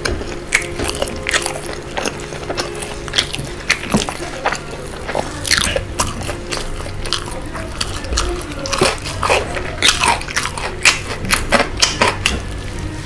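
Close-miked chewing and crunching of crispy fried chicken coated in a sticky spicy sauce, with wet, sticky crackles as a glazed boneless piece is torn apart by hand.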